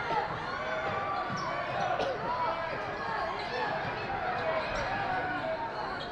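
Live basketball game sound: a ball bouncing on the court under steady crowd noise and voices.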